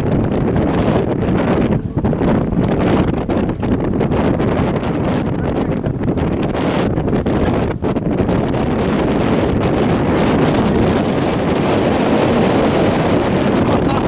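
Loud, steady wind buffeting the microphone, a dense rumbling hiss with brief dips.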